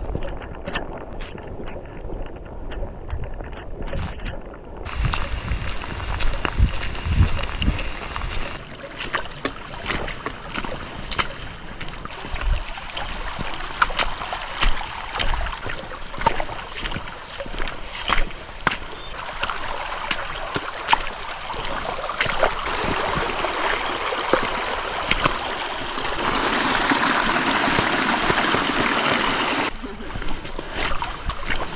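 Rainwater running down a flooded, muddy hiking trail, with wind buffeting the microphone for the first several seconds. Frequent sharp splashes and taps of walking through the water run throughout, and the rush of water grows louder near the end.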